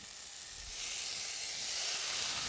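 Raw bacon sizzling as the slices are laid into a hot skillet on medium-high heat. The hiss starts at once, swells over the first second, then holds steady.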